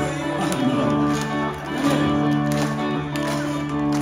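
Live rock band playing an instrumental passage: electric guitars hold ringing chords over a steady drum beat.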